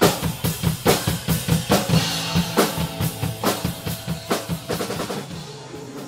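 Acoustic drum kit played in a steady beat, with bass drum and a loud snare stroke roughly every second and lighter hits between. The drumming fades out near the end.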